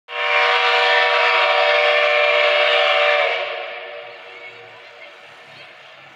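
Steam locomotive whistle blowing one long, loud blast of about three seconds, then fading away.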